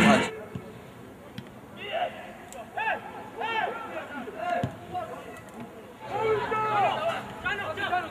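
Music cuts off at the very start, then men's voices shout and call out in short separate calls across an open football pitch, growing busier about six seconds in. A few faint knocks sound between the calls.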